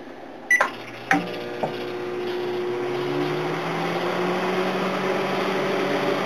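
Microwave oven started from its keypad: one short high beep as Start is pressed, a click about a second in, then the oven running with a steady low hum and fan noise that grows a little louder.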